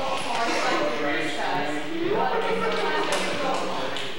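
Indistinct talking between songs; no music is being played.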